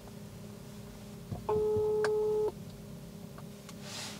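Phone ringback tone heard over a smartphone's loudspeaker: one steady beep lasting about a second, midway through. It signals that the call has gone through and the called phone is ringing.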